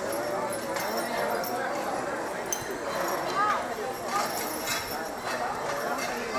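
A team of two draft horses stepping and shifting their hooves on a dirt track, with scattered short knocks and clinks, under steady crowd chatter.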